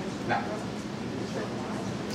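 One short spoken 'no', then the room noise of a meeting hall with a steady low hum.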